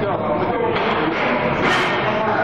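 Indistinct voices over background music in a busy gym, with a short sharp hiss near the end.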